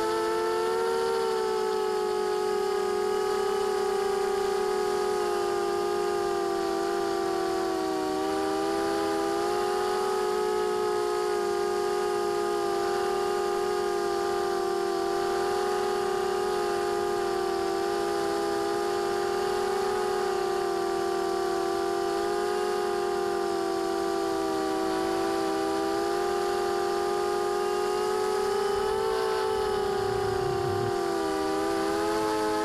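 Brushless motors and propellers of a ZMR250 FPV racing quadcopter heard from its onboard camera: a continuous multi-pitched whine that dips and recovers briefly every few seconds as the throttle changes.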